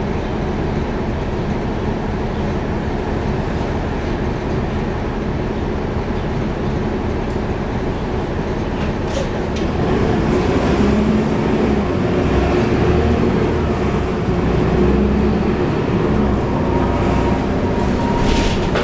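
Cummins ISL9 diesel engine of a 2011 NABI 416.15 transit bus, heard from inside the cabin near the rear, running with a steady rumble. From about ten seconds in it gets louder, with a steadier humming engine note, as it works harder.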